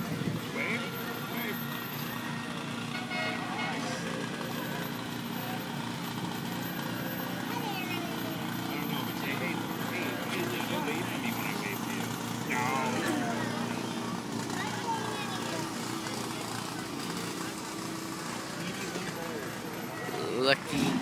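A fire truck's engine running as it rolls slowly past, under the steady chatter of a roadside crowd.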